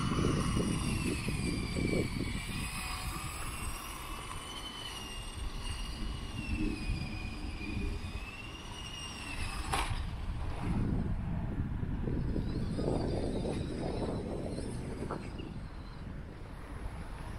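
Brushed RC380 electric motor of a 1:18 scale 4WD RC buggy whining, its pitch rising and falling as the throttle is worked. The whine fades out after a sharp click about ten seconds in, leaving a low rumbling noise.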